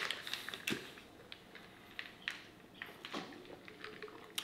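Faint scattered clicks and taps of a plastic shaker bottle's lid being handled.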